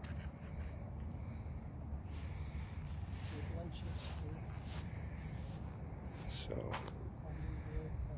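A steady, high-pitched insect drone, the summer chorus of crickets, over a low background rumble.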